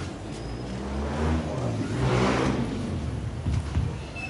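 A motor vehicle passing by: a low engine rumble and road noise swell to a peak about two seconds in, then fade. There are a couple of short knocks near the end.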